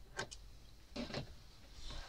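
Small thread snips cutting sewing thread: a few light clicks, a pair about a quarter second in and more about a second in.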